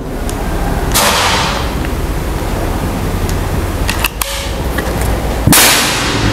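PCP air rifle fired once about five and a half seconds in, a sharp crack, the loudest sound here, a shot of about 918 fps over the chronograph. A few short clicks of the rifle being handled come just before it, and a separate sharp burst that fades out over a second comes about a second in.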